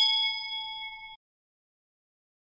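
Subscribe-animation notification-bell sound effect: a single bright bell ding that rings on and fades, then cuts off abruptly just over a second in.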